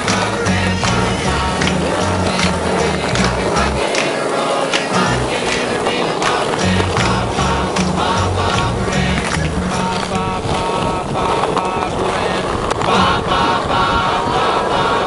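Music with a steady beat and bass line, with skateboard wheels rolling on pavement and the board clacking on tricks beneath it.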